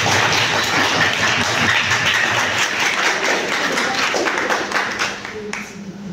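Audience applauding, many hands clapping together, fading out near the end.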